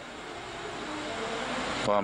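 A rushing mechanical noise with a faint low hum, growing steadily louder, like a distant engine passing.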